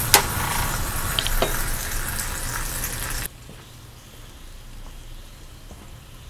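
Sauce sizzling and bubbling in a pot on a stove, with a sharp clink just after the start. The sizzling cuts off abruptly about three seconds in, leaving quiet room tone.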